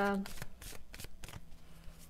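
A deck of oracle cards being shuffled overhand between the hands: an irregular run of quick card slaps and flicks, several a second.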